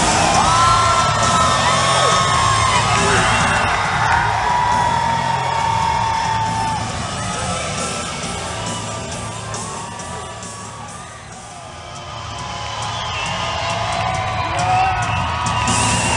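Music played loud over an arena's PA with a crowd cheering and shouting over it; the sound sinks around eleven seconds in and swells again near the end.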